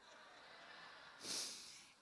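A short, sharp breath through the nose close to the microphone, a little past a second in, over faint room noise.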